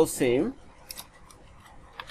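A man's voice speaking for the first half second, then a few faint, short clicks of a computer keyboard as code is typed and deleted.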